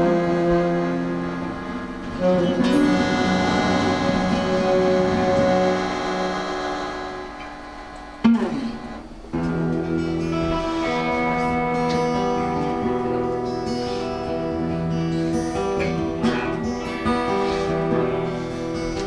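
Live instrumental intro on saxophone, bayan (button accordion) and acoustic guitars: long held notes that fade down over the first eight seconds. After a sudden loud stroke and a short pause, the acoustic guitars strum steadily with held saxophone and bayan notes over them.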